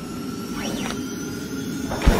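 Logo-intro sound effect: a steady low rumble with a thin steady tone over it and a quick rising-then-falling sweep about half a second in. The tone cuts off just before the end.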